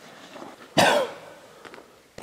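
A single short, loud vocal outburst from a person, like a cough, about three-quarters of a second in, falling in pitch.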